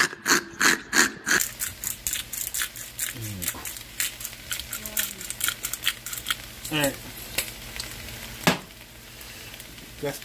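A pepper mill grinding in short rhythmic crunches, about three a second, that stop about a second and a half in. Then a soft crackling hiss with light ticks from shrimp starting to fry in butter in a pan.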